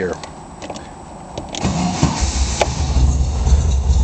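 Dual-carburetted 1600cc engine of a Porsche Speedster replica being started. It cranks briefly about a second and a half in, fires right up, and then runs steadily with a deep rumble.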